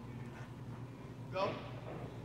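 A man calls "Go" once, a little over a second in, over a steady low background hum.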